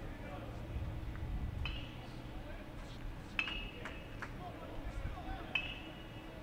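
Faint outdoor ballpark ambience with three short metallic pings, about a second and a half to two seconds apart, each ringing briefly.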